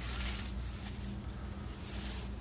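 Cleavers stems and leaves rustling as a hand grasps and tugs at a clump of them, loudest at the start, over a faint steady low hum.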